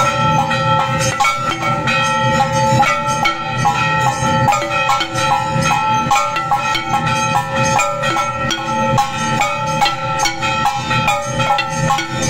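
Temple aarti music: bells, cymbals and drums struck in a fast, even beat under steady ringing tones.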